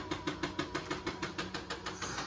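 Electric sit-stand desk's lift motor running as the desktop rises: a steady hum with rapid, even ticking.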